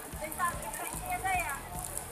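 Faint voices of people chatting in the background, a few brief bits of speech over steady outdoor noise.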